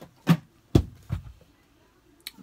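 Things being dropped and handled around a cardboard box: two or three sudden thumps in the first second and a half, the loudest and deepest about three quarters of a second in.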